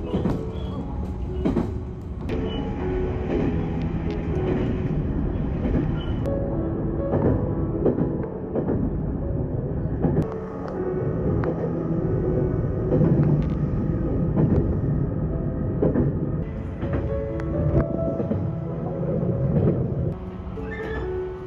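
Electric train running along the track, heard from inside the car: a steady low rumble with scattered clicks of the wheels over the rails. Background music with a gentle melody plays over it.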